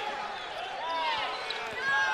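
Basketball shoes squeaking on the hardwood court in a few short chirps as players cut and move, over a steady arena crowd murmur.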